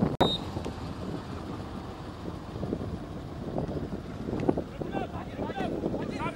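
Wind rumbling on the microphone over open-air pitch ambience, with distant voices of football players calling out on the field, more of them from about two-thirds of the way in. The sound cuts out for an instant just after the start.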